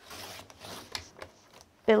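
Card sliding and rubbing across the plastic bed of a paper trimmer as it is lined up against the scale, with a few light clicks.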